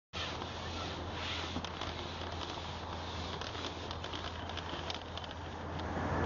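Steady outdoor ambience: an even hiss over a constant low rumble, with a few faint scattered ticks.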